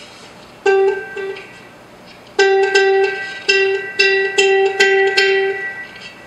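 Soprano ukulele with a home-made piezo pickup, heard through a small amplifier: one plucked note about a second in, then after a short gap a quick run of about eight repeats of the same note, each ringing briefly. The tone is bright and thin with little bass, as the high-impedance piezo loses the low end.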